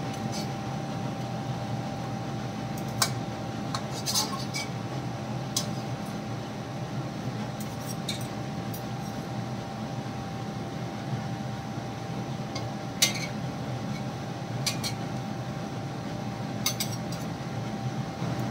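A long steel ladle clinking and scraping against an iron karahi: scattered short metal clicks a second or more apart while softened tomato skins are lifted out of the chicken and tomatoes, over a steady hiss.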